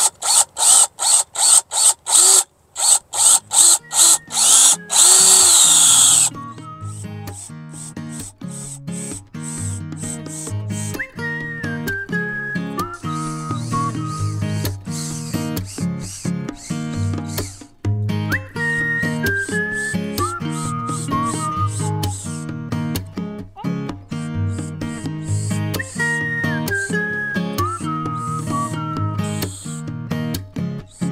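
Cordless drill driving screws into a wooden raised bed: a quick string of short trigger bursts, then one longer run of about two seconds with a rising whine. About six seconds in, background music with plucked guitar takes over.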